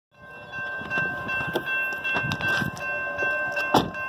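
Railroad grade-crossing warning bell ringing steadily as the crossing signal activates for an approaching train, with a few sharp irregular thumps over it.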